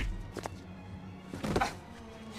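Film fight-scene soundtrack: a low music underscore with a faint knock about half a second in and a heavier thud about one and a half seconds in, the sound of a blow landing.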